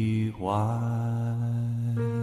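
Christmas music: a low voice holds a long, chant-like sung note. It breaks off briefly about a third of a second in, then resumes and holds steady.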